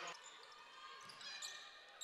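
Faint ambience of a basketball game in a gymnasium: low crowd murmur and court sounds between plays.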